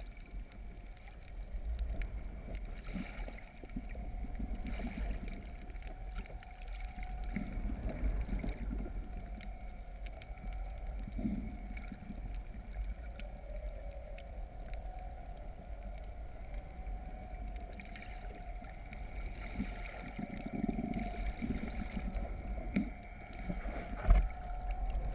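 Underwater sound of a camera being towed behind a boat: a constant deep rumble of water rushing past the housing, a steady hum of the towing boat's motor carried through the water, and occasional gurgles and small clicks.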